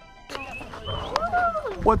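Excited voice cries with sliding pitch, rising and falling, just before a greeting starts at the end. A faint tail of intro music fades out in the first moment.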